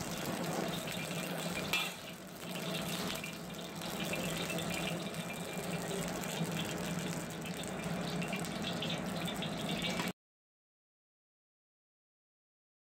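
Steady hiss and low hum of a gas range burner under a steel wok of heating oil, with a few faint crackles. The sound cuts off abruptly to silence about ten seconds in.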